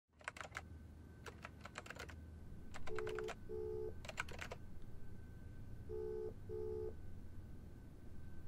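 Tapping clicks of a smartphone's on-screen keyboard, in quick bursts, then a phone call's ringback tone: two double rings, each a pair of short beeps, over a low steady hum.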